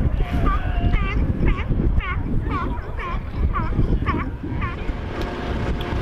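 An animal in a beach colony of seals and sea lions calling over and over, short rising-and-falling calls about twice a second, over a steady low rumble.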